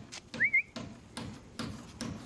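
A short rising whistle, about half a second in, of the kind used to call a dog back, with a few faint clicks around it.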